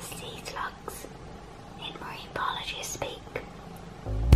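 A woman whispering: quiet, breathy speech in two short stretches, without voiced tone.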